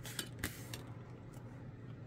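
Painted plastic test spoons clicking lightly a few times against each other and the bench top as they are handled and set down.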